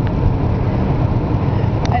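Steady low rumble of a car's engine and road noise, heard inside the cabin.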